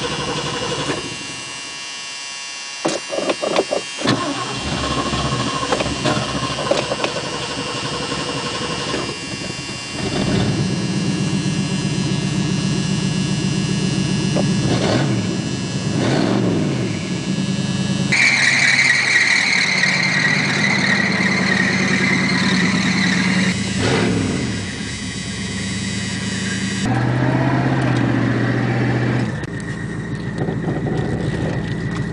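Car engine running, heard from inside the cabin, its pitch rising and falling a couple of times as it is revved, with a few clicks early on.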